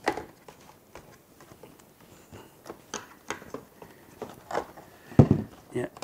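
Scattered plastic clicks and light knocks from hands working the battery cover off the back of a FrSky Taranis X9D radio transmitter, with one louder knock about five seconds in.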